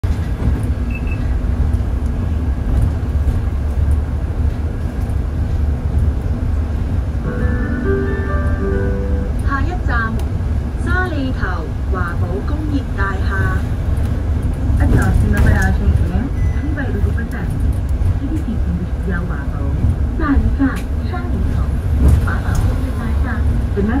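Low, steady cabin rumble of a moving hybrid range-extender city bus. About seven seconds in, a short electronic chime of a few held notes sounds. A recorded next-stop announcement voice follows.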